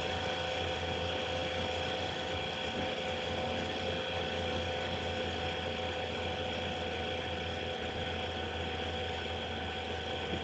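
A steady machine hum, like a small electric motor running: a low drone under several steady pitched tones. It holds unchanged throughout.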